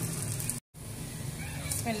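Batter-coated onion rings sizzling as they deep-fry in hot oil in a steel karahi. The sound cuts out completely for a moment a little over half a second in, then the sizzling resumes.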